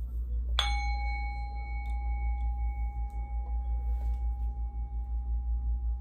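One strike on a small metal ringing instrument about half a second in, its clear single pitch ringing on and slowly fading, the higher overtones dying away first. Low steady hum underneath.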